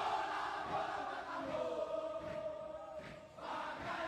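A large group of Indonesian Army soldiers chanting a yel-yel in unison: long held, sung-out lines from many male voices, with a brief break a little before the end and then a new shout starting.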